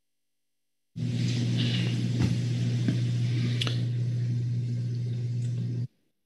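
An open microphone on a meeting's audio feed: a steady low hum with hiss and a few light clicks, switching on suddenly about a second in and cutting off just before the end.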